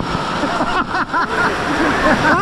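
Ocean surf on a beach: a steady rush of breaking waves washing in.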